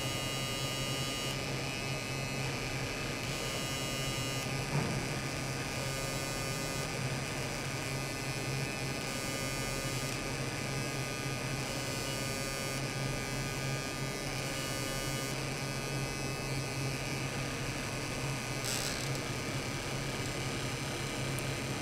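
Steady electrical buzz over a low hum, with faint higher tones that come and go every couple of seconds, and a short hiss near the end.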